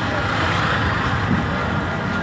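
Road traffic: a steady rumble of passing car engines and tyres.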